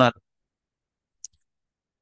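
A man's speech ends just after the start and gives way to dead, noise-gated silence of a video-call headset microphone, broken by a single brief, faint click a little over a second in.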